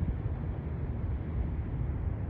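Steady outdoor rumble of wind buffeting the phone's microphone, over a distant hum of city traffic, with no distinct events.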